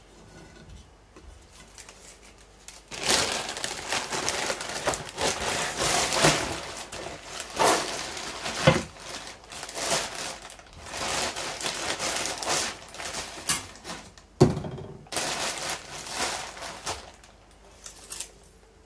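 Thin plastic carrier bag crinkling and rustling as it is handled around a plant pot of soil, with one sharp knock about three-quarters of the way through.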